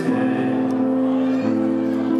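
Live music: a held electronic-keyboard chord with no singing over it, the chord changing about one and a half seconds in, between a man's sung phrases.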